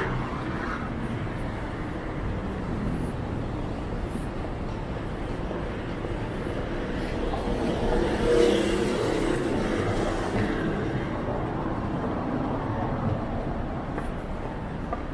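Busy city street ambience: steady road traffic running alongside the pavement, swelling about eight seconds in, with passers-by's voices.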